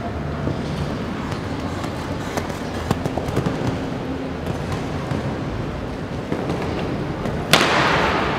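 Indoor show-jumping arena with crowd murmur and occasional hoof knocks on the sand. Near the end comes a sharp knock, then a burst of crowd noise that slowly fades: a rail knocked down at a fence, costing four faults.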